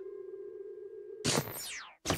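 Cartoon sound effect: a steady electronic hum-like tone. About a second and a quarter in, a loud swooping sweep falls quickly from very high to low.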